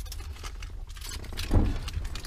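Low, steady rumble of a car engine heard inside the cabin, with scattered small clicks and one soft thump about one and a half seconds in.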